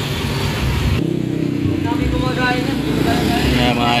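A motorcycle engine running as it passes close by, mixed with people's voices in the second half.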